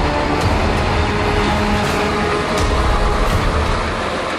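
Military cargo truck running, a steady low engine rumble with road noise, as the music fades out in the first moment.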